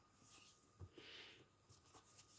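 Near silence, with faint rustling of thick cord and a crochet hook being worked, and one soft tap a little under a second in.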